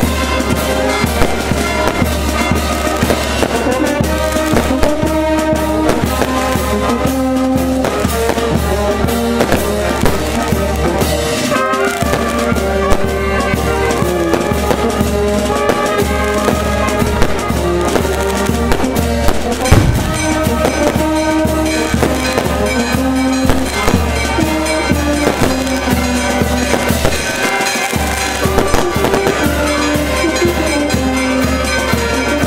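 Brass band music with drums, overlaid with fireworks crackling and popping, the sharpest bangs near the start and around the middle.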